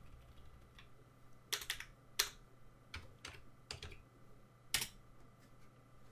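Computer keyboard being typed on: faint, irregular keystrokes in small clusters, with one louder keystroke near the end.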